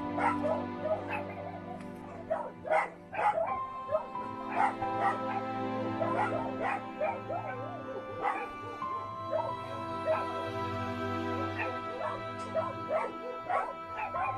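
A dog giving short, repeated high cries with bending pitch, over background music of long held notes.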